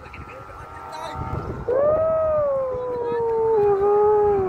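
Bamboo flutes on a Vietnamese flute kite (diều sáo) sounding in the wind. A faint steady high tone is joined, a little under two seconds in, by a louder, lower tone that scoops up, swells, and then slowly slides down in pitch as the wind eases.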